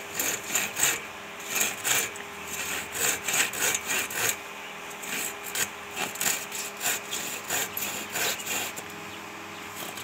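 Hand saw cutting across a wooden branch, in steady back-and-forth strokes about two to three a second.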